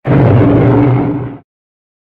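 Roar of Geronimon, the Ultraman kaiju, as a film sound effect: one loud, low, rough roar about a second and a half long, starting abruptly and tapering off.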